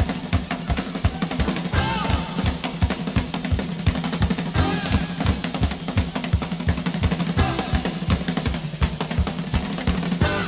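Rock and roll music with no vocals: a drum kit plays a fast, steady beat over a bass line, with a few bent melodic notes above.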